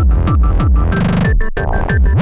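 Tribecore electronic music made in FL Studio: a fast kick drum, about four beats a second, under a short repeating high synth riff. About a second in, the kick breaks off for a brief buzzing roll and a split-second drop-out, then the beat comes back.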